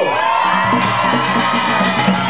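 Korean pungmul farmers' band playing, drums beating under a long held high note, with a crowd cheering.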